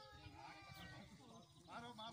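Faint distant voices of a few people talking, with wavering calls and no nearby sound.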